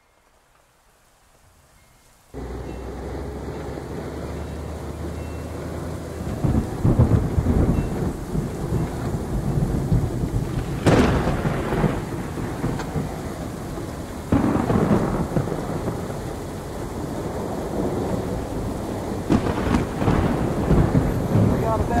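Recorded heavy rain with rolling thunder. The rain fades in and then comes up suddenly about two seconds in, with four long thunder rumbles swelling over it.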